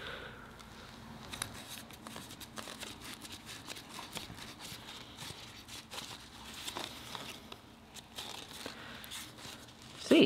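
Quiet rustling of a fabric strap being handled and worked by hand, with many small scattered clicks.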